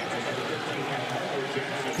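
Basketball arena crowd noise: a steady din of many voices talking and shouting at once during live play.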